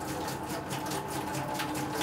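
Water pouring in a thin stream from a plastic jerrycan, an even splashing trickle, with faint steady tones underneath.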